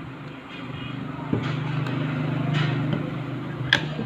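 A low mechanical hum swells over a few seconds and eases off again, while the white plastic housing of an outdoor wireless access point is handled, giving a sharp plastic click about a second in and a louder one near the end.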